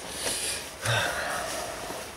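A person breathing out heavily through the mouth, a breathy sigh lasting about a second, heard close to the microphone.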